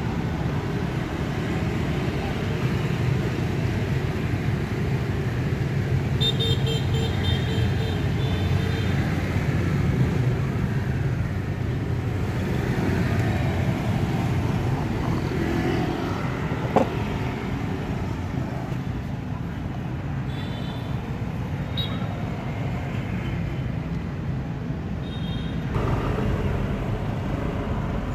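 Steady rumble of street traffic with short horn toots several times, and one sharp knock about halfway through.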